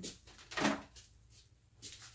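Mostly quiet room tone, with a short pitched vocal sound from a person about half a second in and a faint breath-like sound near the end.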